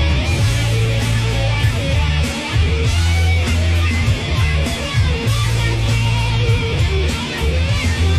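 Hard rock music: electric guitars playing over a heavy, sustained bass line and drums.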